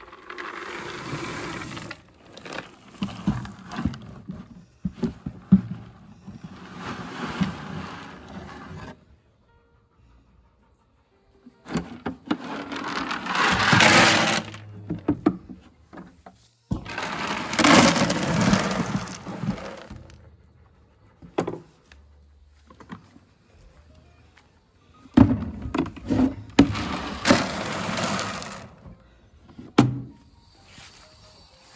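Pelleted horse feed being scooped and poured into buckets and feeders: a rattling rush of pellets that comes in about four bursts, with short quiet pauses between them.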